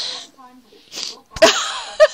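A person laughing: two short breathy huffs, then a sudden loud burst of laughter near the end that breaks into quick "ha-ha" pulses.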